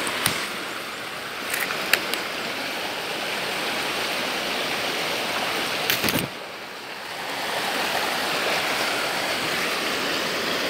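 Shallow rocky stream running steadily, a continuous rush of water, with a few brief sharp knocks, the loudest about two seconds in, and a short drop in the rush just after six seconds.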